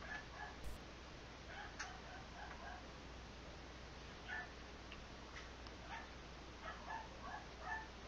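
A dog whimpering faintly in short, high-pitched whines that come in small clusters several times.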